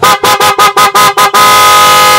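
Electric motorcycle horn being sounded on test: a quick string of short, loud blasts, then one long held blast near the end.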